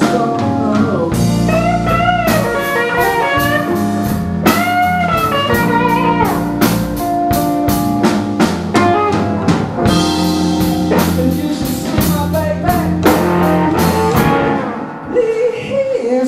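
Live blues band playing an instrumental passage: electric guitars over bass and drums, with a lead line whose notes bend up and down. It eases off briefly near the end.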